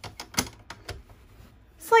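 Several light clicks and taps from handling the work at a stopped sewing machine, the loudest about half a second in, then quiet; a woman starts speaking at the very end.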